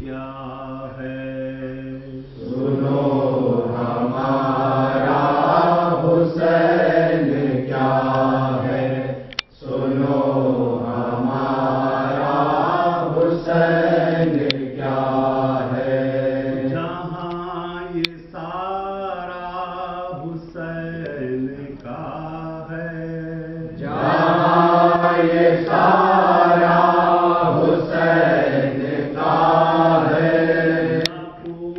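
Men's voices chanting a noha, the unaccompanied Urdu mourning lament of Muharram, in long drawn-out melodic lines. The chant swells louder a couple of seconds in and again near the end.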